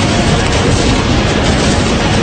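Cartoon battle sound effects: a dense, steady roar of warship gunfire and blasts, mixed with music.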